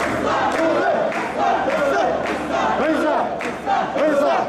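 A group of mikoshi bearers shouting a rhythmic carrying chant together as they shoulder the portable shrine, about two shouts a second, the many male voices overlapping.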